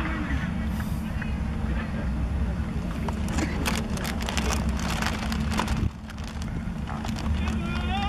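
Wind rumbling on the microphone, easing briefly about six seconds in, with players' voices calling across the field and a quick run of sharp claps in the middle.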